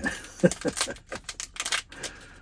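Foil wrapper of a roll of 120 film being torn open and crumpled in the hands: a run of sharp, irregular crackles.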